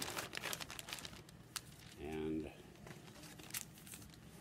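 Plastic mailing bag crinkling and crackling as it is handled and torn open by hand, densest in the first second and a half, with a few scattered crackles after.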